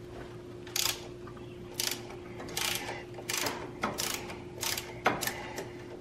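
Socket ratchet clicking in short runs, about seven in all, as it backs out a freshly loosened oil drain plug from a small engine's crankcase.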